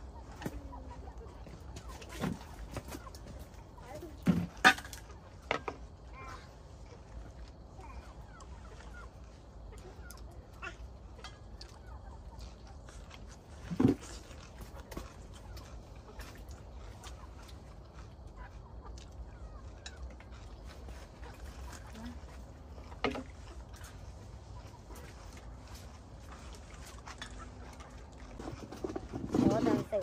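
Metal pots and bowls knocking as they are set down on a stone tabletop, a handful of sharp knocks with the loudest about four seconds in and near the middle, over a low steady hum, with a chicken clucking now and then.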